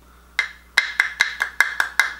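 A loose-powder jar being tapped to shake powder through its sifter into the cap: a quick, even run of sharp clicking taps, about five a second, starting about half a second in.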